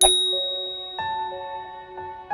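A bright chime strikes once and rings away. About a second in, soft sustained music notes come in.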